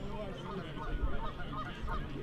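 Geese honking in a string of short calls, mixed with the chatter of a crowd of people.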